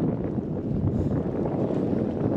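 Wind buffeting the camera's microphone, a steady low rumble with no other clear sound above it.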